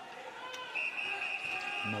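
Arena background of crowd murmur and distant voices, with a steady high whistle-like tone lasting about a second in the middle.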